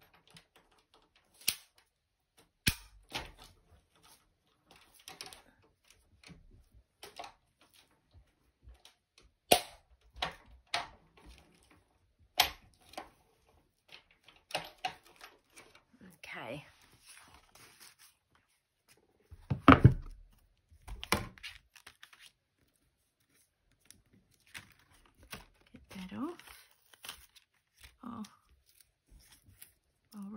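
Die-cutting handling sounds: scattered sharp clicks and taps of acrylic cutting plates and a metal die, short spells of paper rustling, and a few louder knocks, the loudest about twenty seconds in, as card and die are run through a Cuttlebug die-cutting machine.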